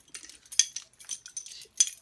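A bunch of metal keys on a lanyard jingling and clinking as it is shaken. The clinks come in a rapid string, loudest about half a second in and again near the end.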